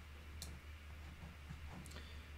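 Two faint, short clicks about a second and a half apart, from working a computer while copying a line of code, over faint room tone with a low hum.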